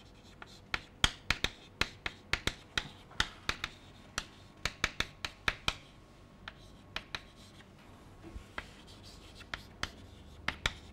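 Chalk writing on a chalkboard: an irregular run of sharp taps and short scrapes as letters are written, several a second, thinning out for a few seconds after the middle before picking up again.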